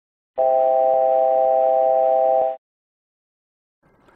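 ATR altitude alert C-chord from the aircraft's warning system: a steady electronic chord of several tones held for about two seconds, then cutting off. It sounds when the aircraft passes 1000 feet before the selected altitude in a climb or descent, or strays more than 250 feet from it.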